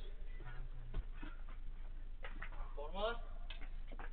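A person's voice calling out briefly, a short distant call about three seconds in, over a steady low mains hum on the security camera's audio. A couple of sharp clicks also sound, one about a second in and another just after the call.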